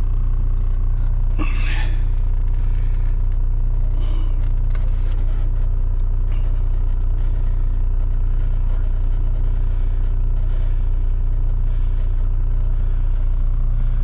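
Heavy truck's diesel engine idling steadily, heard from inside the closed cab, with an occasional faint rustle of paper.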